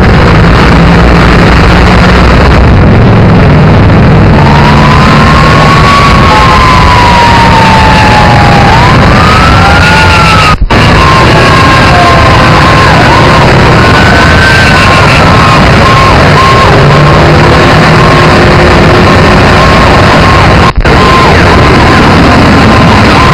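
Emergency vehicle sirens wailing, rising and falling in pitch, over a loud, steady rush of noise. From about halfway a steady, interrupted tone joins in. The sound cuts out briefly twice.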